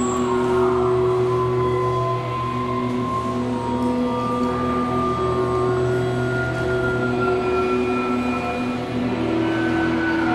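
Many electric guitars holding sustained notes together: a dense, steady drone of overlapping tones at many pitches. Single notes come in and drop out every second or two while the mass of sound holds.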